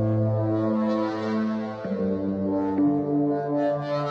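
Sped-up instrumental music without singing: low, held notes that step from one pitch to another about once a second.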